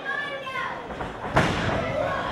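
A single sharp thud in the wrestling ring about one and a half seconds in, as the wrestlers close in and lock up. Spectators' voices and shouts are heard in the hall before it.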